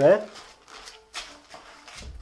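Soft, brief rustling and handling noises as a fresh microfibre cloth is picked up.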